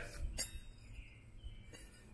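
A steel cultivator shovel being handled on a concrete floor: one sharp metal click about half a second in, then a few faint ticks.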